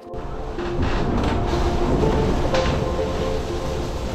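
Background music over the loud, steady low rumble and rushing water noise of an IMOCA 60 racing yacht under way at sea, heard from inside its enclosed cockpit; the noise cuts in suddenly at the start.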